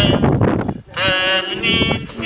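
Hymn singing amplified over horn loudspeakers, with voices holding long, slightly wavering notes and a short break a little under a second in.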